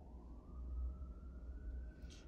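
Faint wailing siren, one tone rising slowly in pitch, over a steady low hum.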